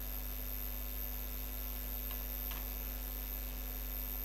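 Steady electrical mains hum on the microphone, with two faint clicks about half a second apart midway through: two computer keystrokes, one deleting a character and one typing the next.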